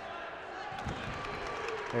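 Wrestlers' bodies thudding onto the mat during a takedown, a few dull thumps about a second in, over the steady murmur of an arena crowd.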